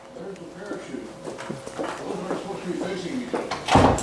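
Faint speech, which the lecturer takes for his own talk being played back somewhere nearby, then one short loud thump near the end.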